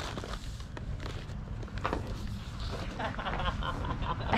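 Faint voices talking in the background over a low, steady rumble.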